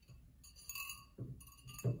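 Ceramic bonsai pot clinking and ringing lightly as it is handled with bonsai wire threaded through its drainage holes, then set down on a wooden board with a few knocks, the loudest near the end.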